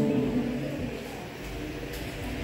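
A pause between a man's words over a church sound system: the last of his amplified voice fades at the very start, then only low room noise with a faint low hum.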